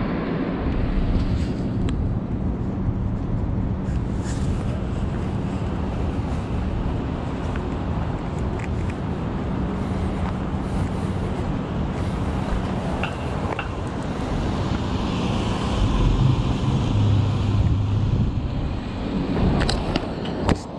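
City street ambience: steady traffic noise with a low, steady hum. A vehicle engine comes up louder for a few seconds near the end, along with a few faint ticks.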